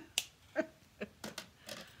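Several short, sharp clicks and taps from a dual-tip marker and paper being handled on the craft desk, about six in two seconds, with a breathy laugh near the end.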